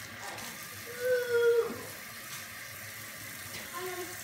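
Kitchen faucet running steadily into the sink, with a child's short wordless held note about a second in that slides downward as it ends.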